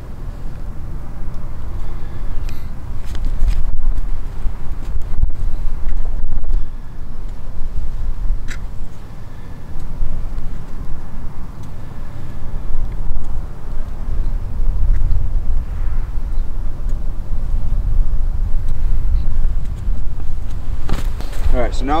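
Wind buffeting the microphone outdoors: a loud, gusty low rumble that swells and fades, with a few faint clicks.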